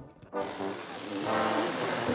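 Cartoon sound effect of air rushing in a sustained hiss, an inflatable swelling up, starting about a third of a second in, with high whistling tones that slowly fall, over music.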